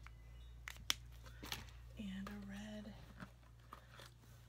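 Plastic marker cap clicking onto a marker pen, with a few sharp clicks in the first second and a half as markers are handled, the sharpest about a second in. Then a woman hums briefly for about a second.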